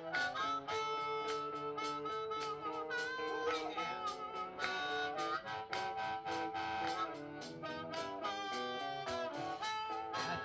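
Harmonica solo with held and bent notes over a live blues band, with electric guitar, bass, keyboard and drums keeping a steady beat.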